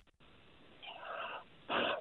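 A faint intake of breath over a telephone line about a second in, then a man starts speaking near the end.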